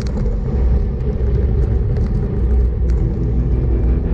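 Steady low rumble of wind buffeting the camera microphone and tyres on asphalt while riding a road bike at about 33 km/h.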